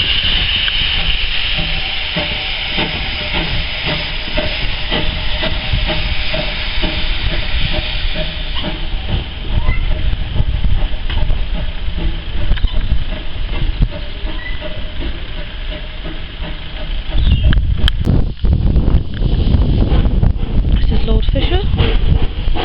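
Steam locomotive hissing steam at a standstill, a steady hiss over the hum of a nearby diesel train; a deeper rumble grows louder near the end.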